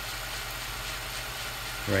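Steady low electrical hum under an even hiss, with no distinct events: the background noise of the narration recording.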